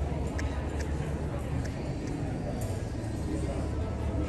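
Indoor arena room noise: a steady low rumble with faint, indistinct voices and a few light clicks in the first couple of seconds.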